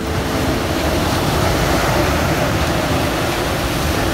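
Ocean surf breaking on a sandy beach: a steady rush of waves.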